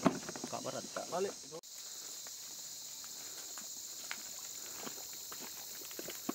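A steady, high-pitched drone of forest insects. People's voices talk faintly during the first second and a half, and there are a few faint clicks later on.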